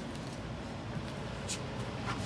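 Two 140 mm 12 V computer fans in an ice-chest air cooler running at maximum speed: a steady whir of moving air. A brief hiss comes about one and a half seconds in.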